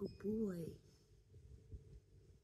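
A woman's short closed-mouth hum, one brief rise-and-fall "mm" in the first second.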